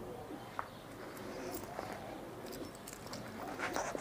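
Domestic pigeons cooing faintly.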